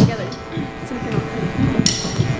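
A lull on a live stage: low voices over a faint held tone from the band's amplified instruments, with a brief bright metallic hit near the end.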